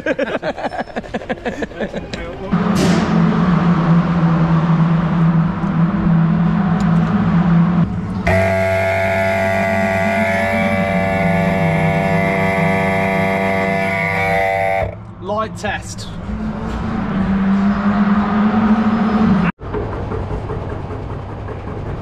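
A race car engine running steadily at idle, a level hum with a stack of steady overtones, broken up by several cuts, after a burst of laughter at the start.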